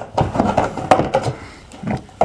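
Hands rummaging in a cardboard box and lifting out a PC power cable: cardboard rustling and scraping with light knocks, dying away near the end.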